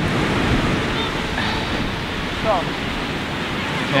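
Small waves washing steadily onto a sandy beach, with wind on the microphone.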